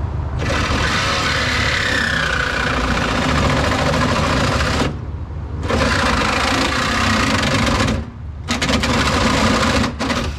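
Reciprocating saw cutting through the sheet steel of a car door. It runs in three cuts: a long one of about four and a half seconds, then two shorter ones with brief pauses between.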